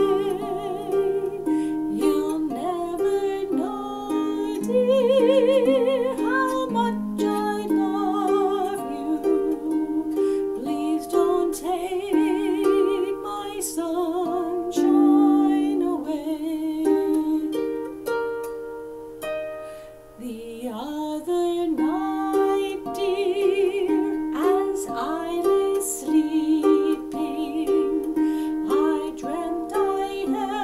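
A woman singing with vibrato to her own lever-harp accompaniment, the harp strings plucked in a steady flow of notes under the held sung notes. The music grows faint for a moment about two-thirds of the way through, then voice and harp pick up again.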